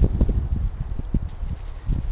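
Irregular soft knocks and handling thumps as a small plastic bag of loose propolis chunks is handled and filled.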